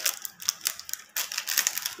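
Plastic biscuit wrapper crinkling in the hand, a run of quick irregular crackles.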